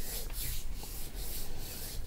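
Hands rubbed together back and forth close to a microphone: a quick run of dry, rasping strokes.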